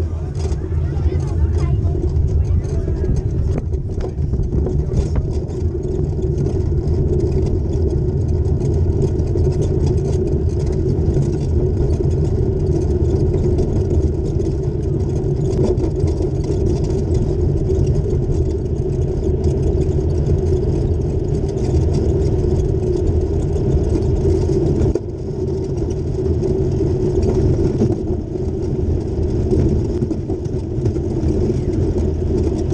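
Gravity (soapbox) kart with no engine rolling fast downhill on asphalt, heard from onboard: a steady rumble of its wheels on the road, dipping briefly about 25 seconds in.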